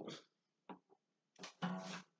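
Acoustic guitar handled quietly: a faint tick, then a short soft strum near the end.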